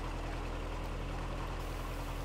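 Narrowboat engine running steadily while cruising, a low even hum.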